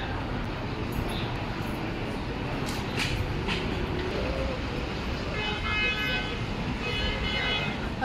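Steady city-street traffic noise, with a faint pitched tone sounding twice in the second half.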